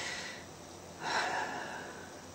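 A man drawing one breath close to a studio microphone, heard about a second in over quiet room tone.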